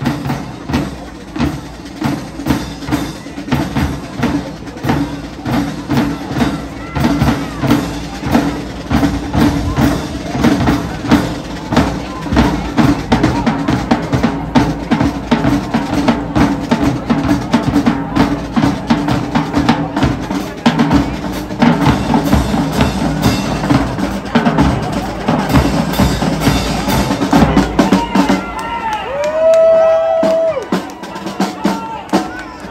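High school marching band drumline playing a marching cadence on snare, tenor and bass drums, a steady run of rhythmic drum hits and rolls as the band marches in.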